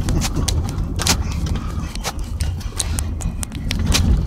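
Vehicle cabin noise while driving over gravel and onto salt crust: a steady low rumble of engine and tyres, with irregular sharp ticks and crackles, several a second, from the surface under the tyres.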